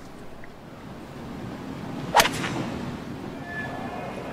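A driver striking a golf ball off the fairway: one sharp crack about two seconds in, followed by a low murmur from the gallery that slowly swells.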